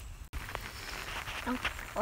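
Light rain falling on the river and an umbrella overhead, a steady soft hiss that cuts out for an instant about a third of a second in and comes back denser.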